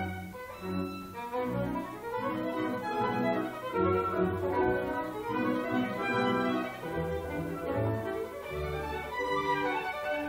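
Live orchestra playing classical music, with bowed strings carrying overlapping held and moving notes, heard from the back of the audience in a hall.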